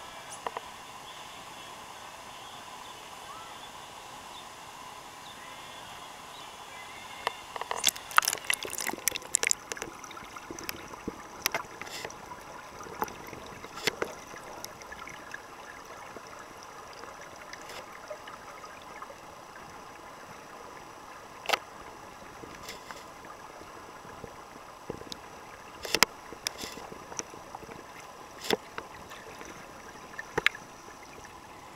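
Muffled underwater pool sound picked up by a submerged camera: a steady hiss with sharp clicks and crackles of bubbles and moving water. They start about eight seconds in, come thickly at first, then scatter.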